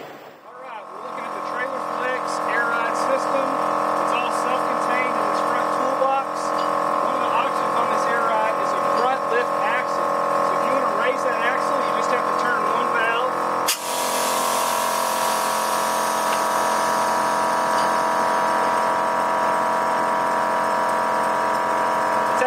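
Small electric air compressor of a trailer air-ride suspension running with a steady hum while the front lift axle is raised. About 14 seconds in there is a click, and a hiss of air joins the hum.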